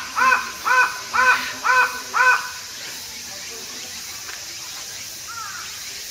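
A bird calling six times in quick succession, about two calls a second, each call rising and then falling in pitch. A fainter single call follows about five seconds in.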